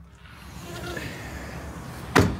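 Sliding glass balcony door being slid open by hand, the outdoor city noise swelling steadily as the gap widens.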